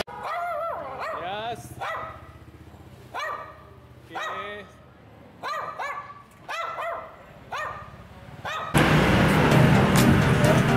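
A small long-haired dog barking: about ten short, high barks, roughly one a second, some in quick pairs. Loud music comes in suddenly near the end.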